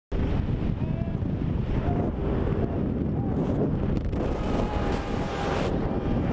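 Loud, steady wind buffeting the camera microphone as a tandem skydiver leaves an aircraft door and drops into freefall.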